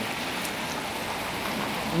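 Steady, even hiss of outdoor street ambience on a wet city street.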